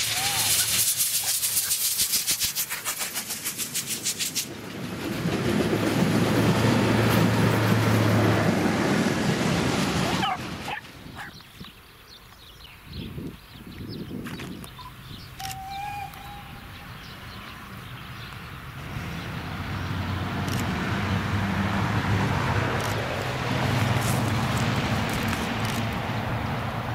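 Steam locomotive hauling a passenger train past at speed, with rapid exhaust beats and hissing steam for about four seconds, then a heavy steady rumble of the train going by. This cuts off suddenly about ten seconds in, leaving a quieter stretch. From about nineteen seconds a steam train is heard approaching, growing steadily louder.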